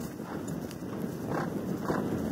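A horse moving across grass under its rider: soft, rhythmic hoofbeats about twice a second over a steady rumble of wind on the microphone.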